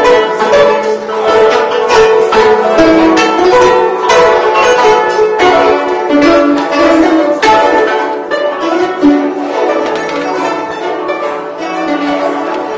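Guzheng (Chinese plucked zither) music: a melody of plucked notes with quick runs, easing slightly in loudness near the end.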